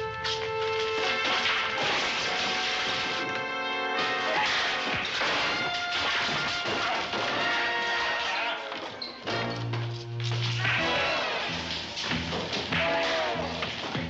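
Fight-scene music running under a series of punch, whack and crash sound effects from a staged brawl, with props being smashed. A low held note in the music stands out around two-thirds of the way in.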